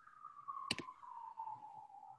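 A faint, thin high tone sliding slowly down in pitch, with one sharp click about two-thirds of a second in.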